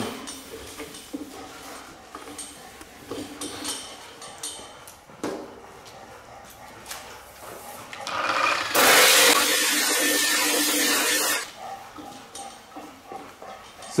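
Angle grinder with a shrinking disc run against a sheet-metal body panel for about three seconds, heating and flattening the high spots to shrink the metal, then cutting off suddenly. Before that, a few light knocks and shop clatter.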